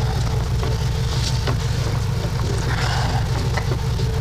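An engine running steadily in the background, a low even rumble, with a few faint clicks over it.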